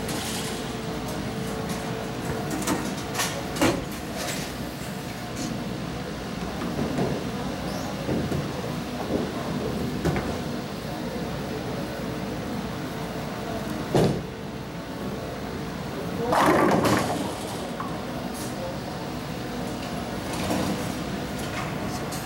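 Bowling alley: a bowling ball strikes the pins with a sharp crack about fourteen seconds in, followed a couple of seconds later by a louder, longer clatter, over the steady background noise of the alley.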